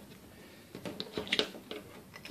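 Faint handling sounds of a plastic side-release buckle and nylon webbing strap: a few light clicks and rustles, starting a little under a second in.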